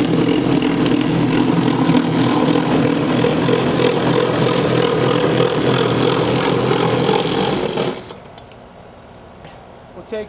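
Handheld power saw running steadily as it cuts through the soffit panel under a roof overhang, stopping abruptly near the end.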